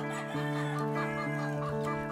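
Chickens clucking over soft background music of held chords.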